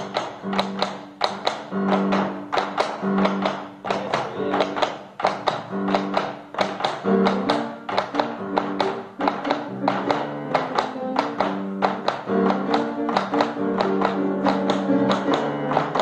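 Chacarera music: a bombo legüero beats the rhythm with sharp, rapid strikes, several a second, over sustained pitched notes from the accompanying instruments.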